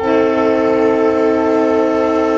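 Diesel locomotive's air horn blowing one long, steady multi-note chord.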